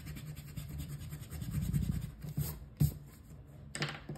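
Pencil eraser rubbing back and forth on paper, scrubbing out a pencil line, with a short sharp tap near the end.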